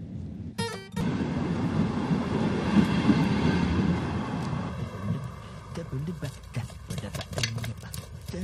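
A passenger train passing close by makes a loud, even rushing rumble that eases off after about four seconds. Music with guitar follows over the quieter train sound.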